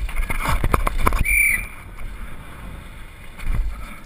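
Wind buffeting a helmet-mounted camera as a downhill mountain bike descends rough concrete and dirt, with rattles and knocks from the bike over the bumps. These are heaviest in the first second or so, with a brief high-pitched tone about a second and a half in.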